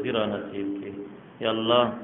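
A man's voice speaking in prayer, with a short held, drawn-out syllable about halfway, cut off above about 4 kHz by the recording.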